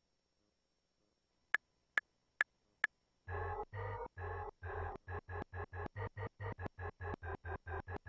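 Four metronome count-in clicks, evenly spaced at about 138 BPM, then a sampler beat starts playing back: chords chopped into quick, even stabs, about four or five a second, over a bass.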